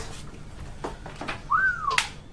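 A person whistling one short note that rises and then falls, about one and a half seconds in, followed by a sharp click.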